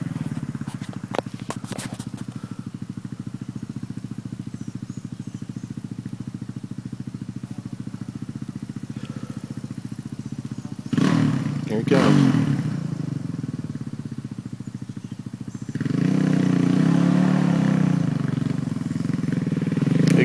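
Dirt bike engine idling steadily with a fast, even pulse. A little past the middle a short shout cuts in, and from about three quarters of the way through the engine sound grows louder and fuller.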